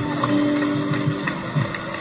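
A congregation clapping, over background music with one held note in the first second or so.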